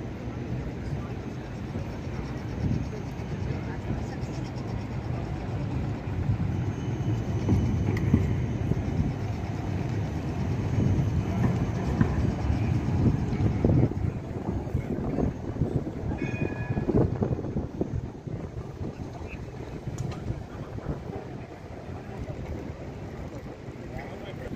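Electric city tram passing close by: a low rumble of wheels on rails that swells through the middle and eases off toward the end.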